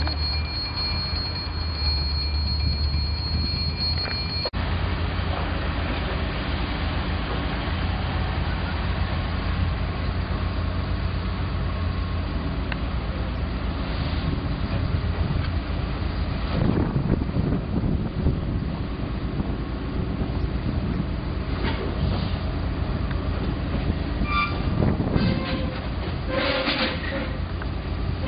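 A locomotive at the station running with a steady low rumble, with scattered metallic knocks and clanks around the middle and near the end. A high steady whine is heard at first and cuts off suddenly about four seconds in.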